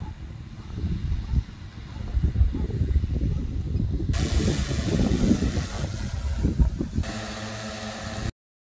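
Large multirotor crop-spraying drone hovering while it sprays, heard as a low, uneven rumble of rotor noise. In the last second or so a steadier hum with several even pitches comes through.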